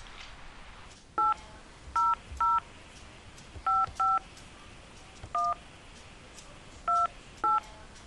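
Touch-tone telephone keypad: eight short dual-tone beeps, one per key press, keyed in at an uneven pace as an ID number is entered into an automated phone menu.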